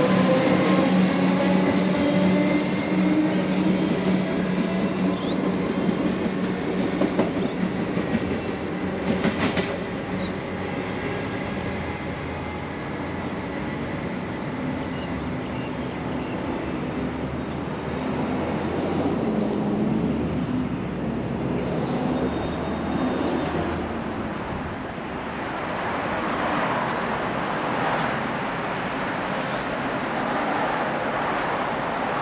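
Melbourne Metro electric suburban train pulling out of a station and accelerating away: its motors whine, one tone rising in pitch over the first few seconds, with a few wheel clicks. The sound fades over about ten seconds, leaving a quieter steady background.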